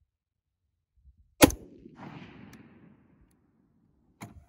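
A single rifle shot from a scoped AR-15 in .223/5.56, one sharp crack about a second and a half in, its report dying away over the following second or so.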